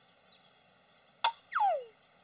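Cartoon sound effect: a sharp click, then a short whistle-like tone that slides quickly downward in pitch.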